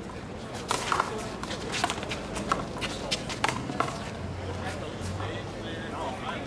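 A one-wall handball rally: about seven sharp smacks of the small rubber ball, struck by gloved hands and hitting the concrete wall and court, spaced irregularly over the first four seconds.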